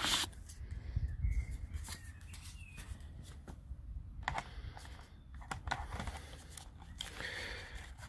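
Handling noise as a drone flight battery is lifted out of a foam case and slid into a DJI Phantom 3 quadcopter: scattered light plastic clicks and rustles, with a low rumble about a second in.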